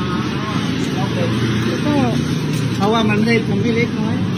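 Voices speaking in short bursts over a steady low rumble.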